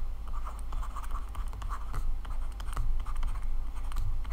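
Stylus writing on a tablet screen: a run of light, irregular taps and short scratches as numbers and symbols are written, over a steady low hum.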